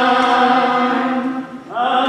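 Voices singing a slow hymn in long, steadily held notes, one note changing to the next near the end.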